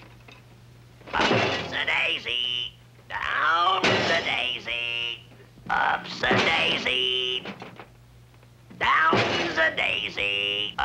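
A cartoon character's voice in four bursts, its pitch sliding up and down, with no words that can be made out.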